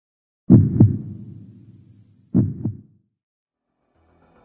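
Heartbeat sound effect: two deep double thumps about two seconds apart, each pair trailing off in a fading low rumble.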